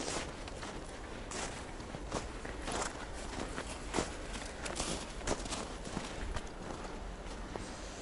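Footsteps on snow, an uneven run of steps.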